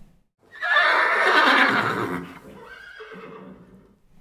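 A horse neighing: one loud, quavering whinny that falls in pitch over about a second and a half, followed by a quieter tail.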